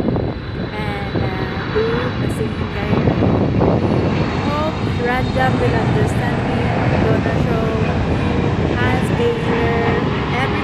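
A steady low rumble that swells about three seconds in and then holds, with short voice-like sounds over it.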